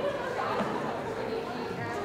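Many people talking at once in a large hall: steady, indistinct audience chatter.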